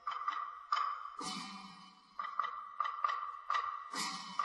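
Buddhist ritual percussion struck in a loose series of about ten strokes, each ringing out on the same high tone. Two heavier strokes, about a second in and at the end, add a lower tone.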